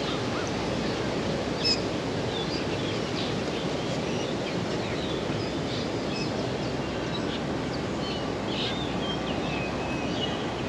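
Urban park ambience: a steady low rush of city noise under scattered short bird chirps, with one sharper, louder chirp a little under two seconds in.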